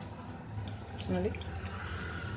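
Boiled colocasia (taro) corms being peeled by hand, wet skin rubbing and squishing off under the fingers, over a steady low hum.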